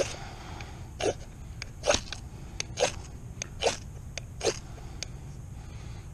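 A knife spine scrapes down a ferro rod six times, one sharp rasp a little under a second apart, throwing sparks at a wax-soaked cotton round. The round does not catch: too little cotton is exposed.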